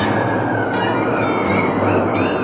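Plucked Portuguese guitar music, its notes struck in quick strokes over a loud, steady rushing noise that covers most of the sound.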